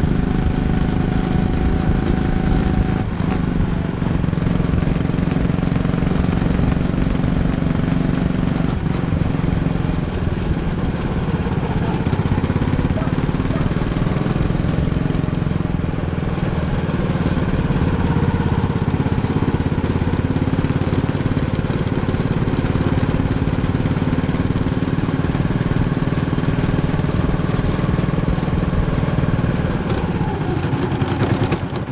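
Small open-wheel race car's engine running steadily at an almost constant pitch, heard onboard. The car is down on power, with the driver at full throttle.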